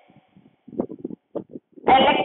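Chalk writing on a blackboard: a few short taps and scratches as letters are written, with quiet gaps between them.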